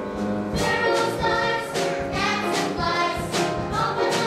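A youth choir singing a song from a stage musical, with a steady instrumental accompaniment underneath.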